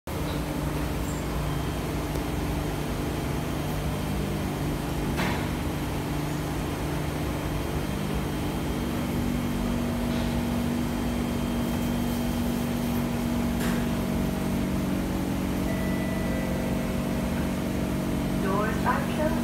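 Air conditioning of a C651 MRT train humming steadily while the train stands at a platform. The hum carries several steady tones, with a higher tone joining about eight seconds in, and a couple of faint clicks.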